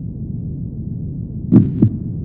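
Channel logo intro sound effect: a low, steady rumbling drone, then two quick deep thuds about a second and a half in.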